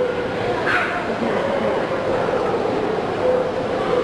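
A small dog yipping, with one sharp yip about three-quarters of a second in, over a background of voices.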